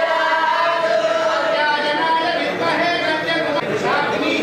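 A group of voices singing together in long held notes, with chatter mixed in.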